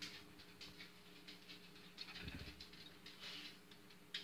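Faint scraping and clicking with a dull thud about two seconds in, as a concrete septic tank lid is pried up and lifted with a steel hook. A steady low hum runs underneath.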